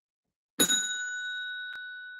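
A single bell-like ding struck once about half a second in, its clear high tone ringing on and slowly fading, with a faint click near the end.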